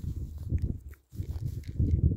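Wind buffeting the phone's microphone on an exposed summit: a low, gusty rumble that drops away briefly about a second in, then picks up again.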